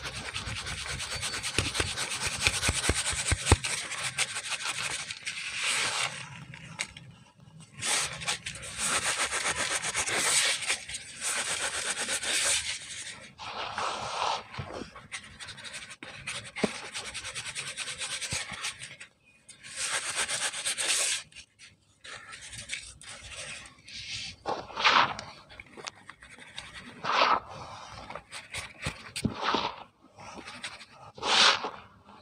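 Dry cement powder rubbed by hand and shaken through a plastic sieve: a gritty, rustling hiss in stretches of a few seconds, broken by short pauses, turning to shorter bursts in the second half.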